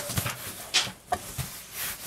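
Cardboard shipping box being handled, its flaps folded and rubbing against each other, making a few irregular scrapes and light knocks. The loudest scrape comes about three-quarters of a second in.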